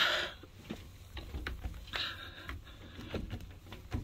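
Handheld phone being moved about: a low rumble on the microphone with scattered small clicks and rustles, and a short hiss about halfway through.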